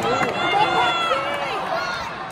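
Football crowd in a stadium, with several nearby spectators' voices calling out together over the general crowd noise, some calls held for about a second.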